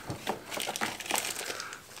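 Plastic bait packaging crinkling as a hand rummages in a plastic tackle box and pulls out a bagged pack of soft plastic worms, a quick run of small crackles.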